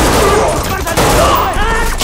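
Rapid gunfire in a close-quarters film fight, with men's voices shouting over the shots.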